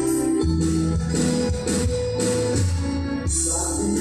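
Karaoke backing track of a Filipino ballad in an instrumental passage, with held keyboard chords over a steady beat and little or no singing.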